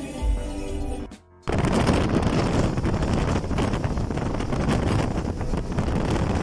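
Music for about the first second, then, after a brief drop, a loud steady rush of wind and road noise from a moving car, with wind buffeting the microphone.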